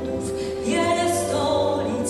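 Singing with musical accompaniment: long sung notes over a steady backing.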